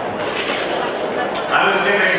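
Glassware clinking at banquet tables over the murmur of a crowd talking in a large hall, with one voice coming up clearly about a second and a half in.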